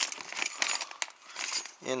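Plastic parts bag crinkling and small steel torque-arm plates clinking as they are handled and pulled out of their zip bag.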